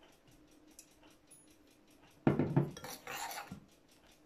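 A metal measuring spoon clinks sharply against a ceramic bowl a little over two seconds in, followed about a second later by a softer scrape of the spoon in the oil-and-paprika mixture.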